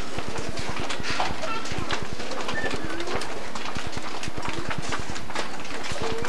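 Many footsteps, a rapid irregular patter of knocks as a children's choir files across a stage into its rows, with faint murmuring voices underneath.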